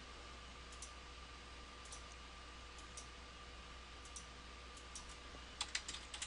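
Computer mouse button clicks: a few faint single clicks spaced about a second apart, then a quick run of louder clicks near the end. A steady faint electrical hum and tone lies under them.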